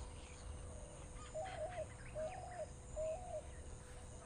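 A bird calls three times, short calls under a second apart, over quiet outdoor ambience with faint high insect chirps.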